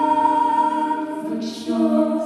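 Mixed choir singing a long held chord that slowly fades. About one and a half seconds in, a sung consonant and a new chord come in together.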